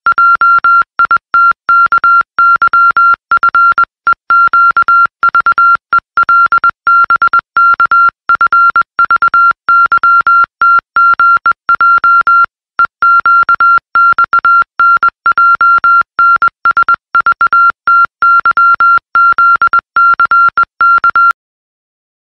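Morse code sent as a single high beep tone, keyed on and off in an irregular run of short and long beeps (dots and dashes). It breaks briefly midway and cuts off shortly before the end.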